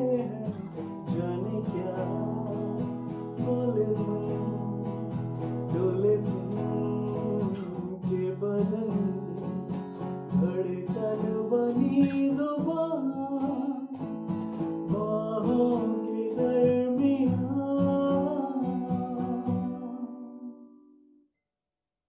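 Acoustic guitar strummed with a man singing along, closing a Hindi film song. It ends on a held chord that dies away to silence about twenty seconds in.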